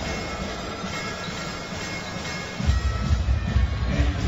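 Arena PA music during a stoppage in a basketball game, over a steady background of crowd noise; a strong bass beat comes in about two-thirds of the way through.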